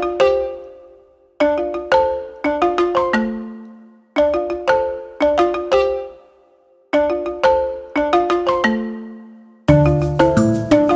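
Light, happy background music: a bright mallet-percussion melody in short phrases of a few struck notes, each phrase dying away into a brief pause before the next begins, about every three seconds.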